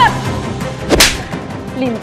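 A single sharp whip-like hit with a deep low thud about a second in, a trailer's dramatic impact sound effect, over a low music bed.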